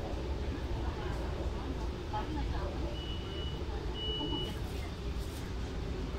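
Running noise of a Hong Kong MTR Tuen Ma Line Phase 1 passenger train, heard from inside the carriage as a steady low rumble. Two short high beeps sound about three and four seconds in.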